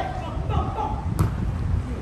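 Brief voices calling on the pitch over a steady low rumble of wind on the microphone, with one sharp click a little over a second in.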